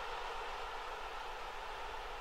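Steady stadium crowd noise, an even hiss-like rumble of many distant voices, slowly fading.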